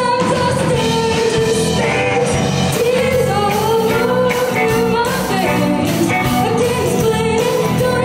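Live rock band playing: a woman sings the lead melody over several electric guitars and drums.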